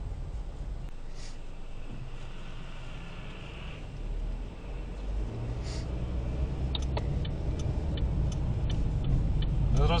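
Car interior noise while driving: low engine and road rumble that grows louder from about halfway through as the car gathers speed. There are a few faint ticks near the end.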